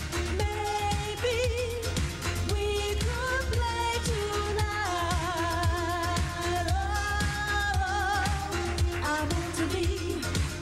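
Female vocals singing a 1980s freestyle pop song live, holding long notes with vibrato over a backing track with a steady dance beat and bass.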